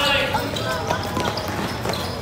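Basketball drill on a concrete court: scattered knocks of footfalls and ball bounces, with children's voices in the background.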